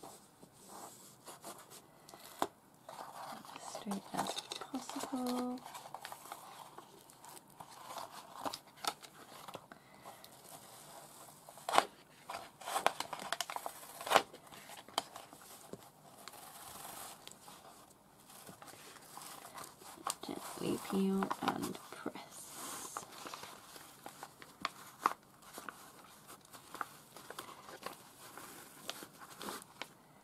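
A sheet of paper being smoothed and pressed down by hand onto a journal cover: irregular crinkling, rustling and rubbing, with scattered sharp taps and a few louder snaps of the paper.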